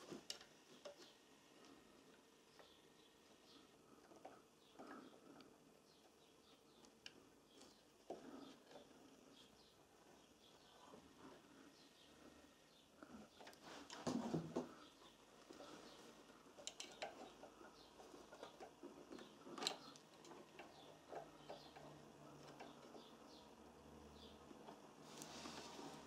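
Near silence with faint scattered clicks and rustles of multimeter test leads being handled and fitted onto a generator rotor's diode terminals, a little busier about 14 seconds in and with one sharper click near 20 seconds.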